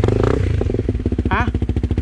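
Off-road motorcycle engine running hard with rapid, even firing pulses, jumping loud as the throttle opens at the start; a short shouted voice about a second in.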